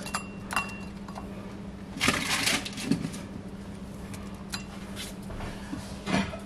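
Crispy air-fried tater tots dropped by hand into a ceramic bowl: scattered light taps and clinks, with a louder clatter about two seconds in.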